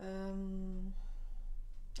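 A woman's held hum, one steady 'mmm' lasting about a second: a hesitation sound while she gathers her next thought.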